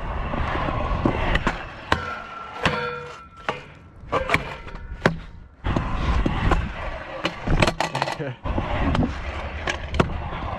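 Scooter wheels rolling on concrete ramps, a steady rumble broken by frequent clicks and knocks from the scooter rattling. The rumble thins out a little past the middle and comes back suddenly about six seconds in.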